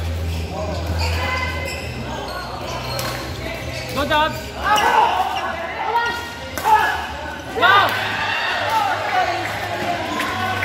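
Badminton rally: racket strings knocking the shuttlecock and court shoes squeaking on the court floor, loudest in a quick exchange about four to eight seconds in.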